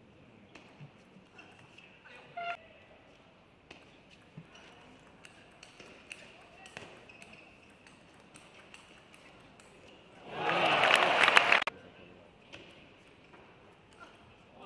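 Celluloid-style table tennis ball ticking off bats and table through a rally, a string of light, quick clicks. About ten seconds in comes a loud shout of voice lasting about a second.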